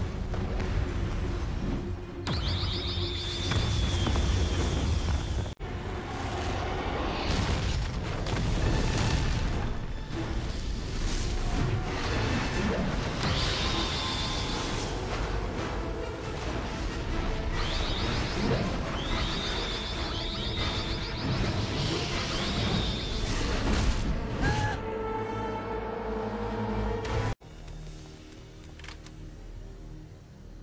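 Animated action soundtrack: dramatic music mixed with booms and crashes, and a high, piercing wail that returns several times, Black Canary's sonic scream. The sound cuts off abruptly twice, about five seconds in and near the end.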